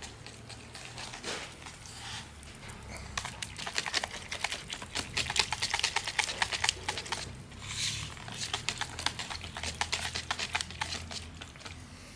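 Metal wire whisk beating a thick hand-casting mix in a plastic bucket, its wires clicking rapidly against the bucket wall. The clicking gets fast and dense about three seconds in and keeps going, with a short lull just past the middle.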